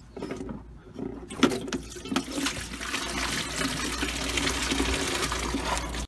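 Engine coolant draining from a loosened hose on a VW T4's 1.9 TD engine into a bucket held beneath it. A few sharp knocks come first, the loudest about a second and a half in, then the flow builds into a steady splashing gush.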